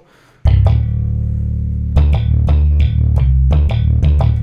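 Logic's Attitude Bass, a sampled electric bass software instrument played from a MIDI keyboard. It starts about half a second in with one long held low note, then plays a run of shorter notes.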